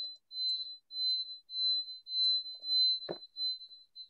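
A high-pitched electronic beep repeating about every half second, a single steady tone each time, with one short soft knock about three seconds in.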